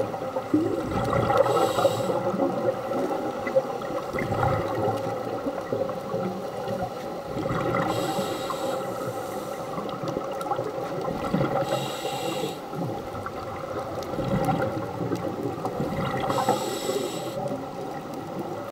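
Scuba breathing through a regulator heard underwater: a short hiss of breath about every four to five seconds, with bubbling in between. Under it runs a steady hum.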